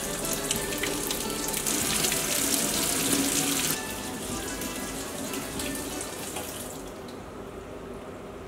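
Water from a kitchen tap running onto a wooden spoon and splashing off it into a stainless steel sink. The spoon's shape throws the stream out in a spray. It is loudest for the first few seconds, drops a little under four seconds in, and fades toward the end.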